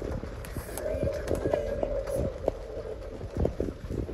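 Irregular hollow wooden knocks and clatter over a steady hum, heard from inside a car as its tyres roll onto the plank deck of a wooden covered bridge.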